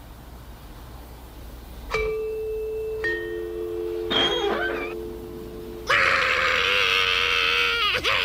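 A two-note doorbell chime: a higher ding about two seconds in and a lower dong a second later, both ringing on for a few seconds. About six seconds in, loud wailing bawl from several voices starts, cartoon crooks crying like babies.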